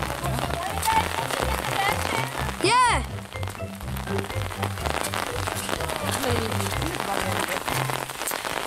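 Steady rain pattering on an umbrella held over the camera. About three seconds in, a short pitched call, the loudest sound here, rises and falls back.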